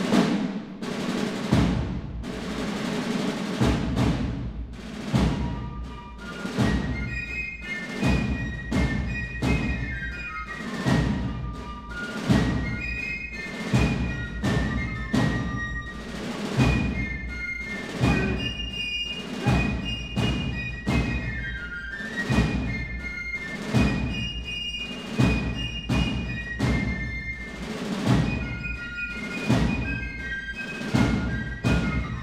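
Military marching music for the posting of the colors: a steady drum beat about once a second, with a high melody joining about six seconds in.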